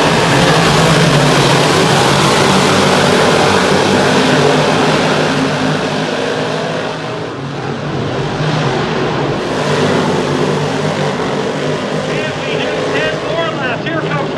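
A pack of 358 Modified dirt-track race cars running hard, their small-block V8 engines blending into one loud, dense sound. It eases off about halfway through as the pack moves away, then builds again.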